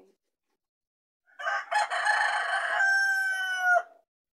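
A rooster crowing once, starting just over a second in: a rough opening, then a long held note that dips in pitch just before it stops.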